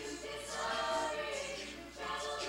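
Chamber choir of mixed voices singing, holding sustained chords, with a short break between phrases near the end.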